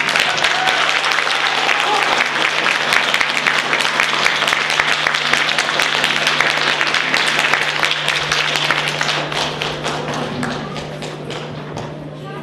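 Audience applause, a dense steady clapping that thins out and fades over the last few seconds.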